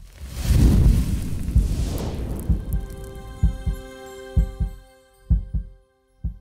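Logo sting for a video outro: a swelling whoosh with a deep rumble, loudest about a second in, then held electronic tones over pairs of deep thuds.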